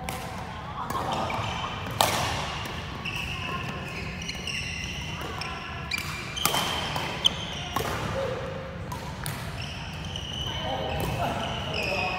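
Badminton rally: rackets striking the shuttlecock in sharp cracks, loudest about two seconds in and again around seven seconds, with sports shoes squeaking on the hall's wooden floor. Voices talk in the background, loudest near the end.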